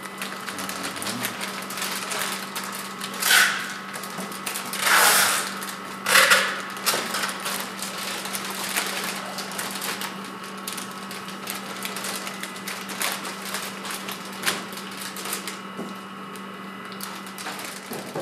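Small continuous band sealer running with a steady motor hum and quick light clicking while plastic bags holding cakes are fed through it. Loud crinkles of the plastic bags come three times, about three, five and six seconds in.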